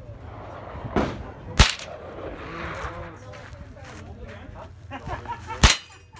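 Three rifle shots from .22 rifles on a firing line, sharp single cracks: a lighter one about a second in, a louder one half a second later, and another loud one near the end.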